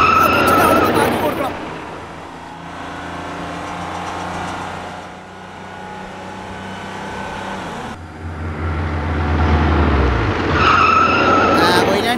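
Cartoon sound effect of a bus engine running, loud at the start, dropping to a quieter hum in the middle and rising again over the last few seconds, with a high steady squeal like skidding tyres in the loud parts.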